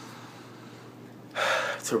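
A man's sharp, loud intake of breath through the mouth, about half a second long, coming after a second and a half of low room tone, just before he speaks again.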